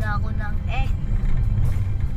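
Steady low rumble of a moving car's engine and road noise, heard from inside the cabin.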